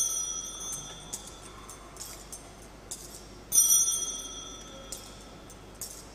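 Altar bell rung by a server at the elevation of the consecrated host: one ring fading away at the start, then a second, louder ring about three and a half seconds in.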